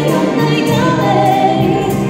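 Wind band of brass, saxophones and clarinets playing a Christmas carol in sustained chords, with singing over it.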